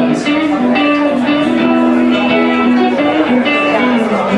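Live guitar music playing an instrumental passage, loud and even, with held notes that change every half second or so.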